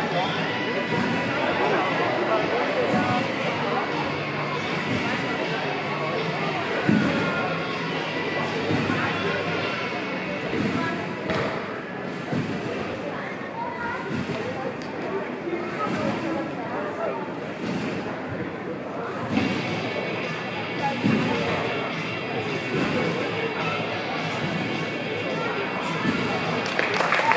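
Sports-hall ambience of background chatter and music, with the occasional thud of a competition trampoline's bed as a gymnast bounces through her routine. The loudest thud comes about seven seconds in.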